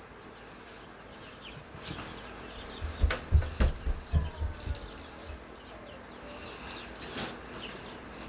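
Chick feed being scooped and poured into a metal trough feeder, with a burst of rattling and low knocks from about three to four and a half seconds in. Chicks peep faintly throughout.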